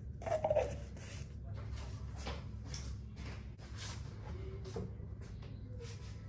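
Faint handling noises from a jar of peanut butter being worked by hand: light clicks and rustles over a steady low hum, with a brief louder sound about half a second in.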